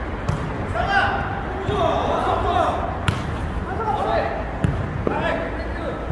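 Several sharp slaps of a jokgu ball being kicked and bouncing on the court, the loudest about halfway through, with players' shouts and voices in between.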